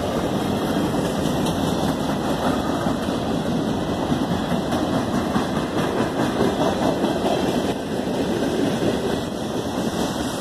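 Freight cars of a passing train rolling by, a steady rumble of steel wheels on the rails.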